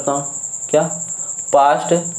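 A steady high-pitched tone or trill runs in the background without a break, under a man's voice that is heard briefly about a second in and again near the end.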